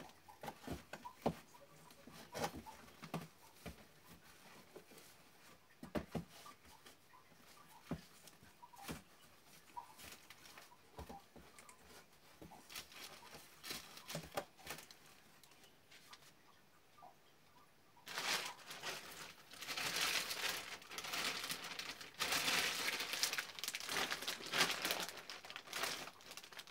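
Goods being packed into a cardboard box: scattered knocks and light rustling of shoes and packets set in, then, about two-thirds of the way through, a long stretch of loud plastic-bag crinkling.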